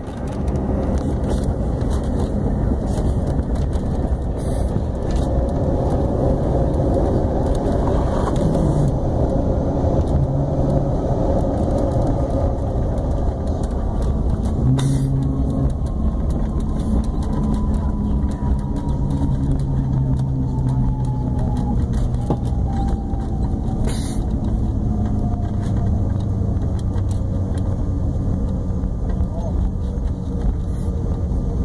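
Regional jet cabin noise just after touchdown: a steady rush of jet engines and airflow as the aircraft decelerates on the runway, with a faint whine that slowly falls in pitch midway through as the engines wind down.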